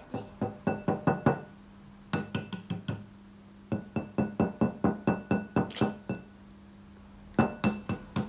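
Eggs tapped against the rims of glass mixing bowls to crack them: rapid runs of light clinks, each tap making the bowl ring briefly. The taps come in four bursts with short pauses between.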